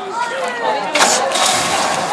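A first-generation Ford Thunderbird's V8 engine starting up about a second in, a sudden loud burst of engine noise over voices.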